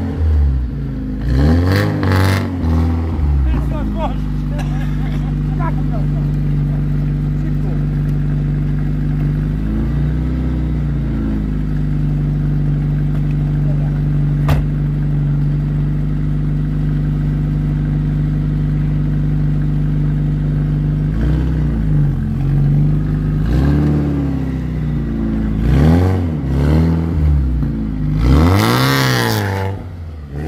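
A BMW E36 coupe's engine, just started, revved several times, then idling steadily with a short blip about ten seconds in, then revved repeatedly again over the last eight seconds, highest near the end.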